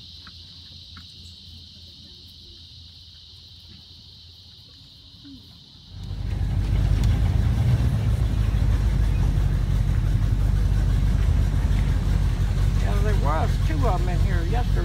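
A steady high insect buzz for about the first six seconds. Then an airboat's engine and propeller come in suddenly, loud and running steadily.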